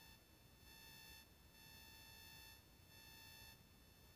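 Near silence, with a faint, high electronic whine that switches on and off every second or so.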